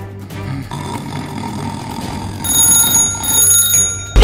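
Background music, then about halfway through a loud electronic ringing sound effect, like an alarm bell, in two short bursts.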